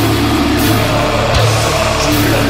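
Doom-death metal: distorted guitar and bass with drums, loud and dense without a break.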